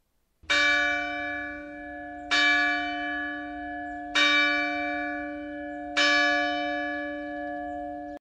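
A deep bell struck four times at the same pitch, about two seconds apart, each stroke ringing on and fading under the next.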